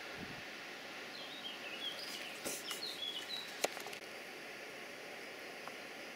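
A small bird chirping several short calls, between about one and three and a half seconds in, over a steady background hiss. A single sharp click a little after the middle is the loudest sound.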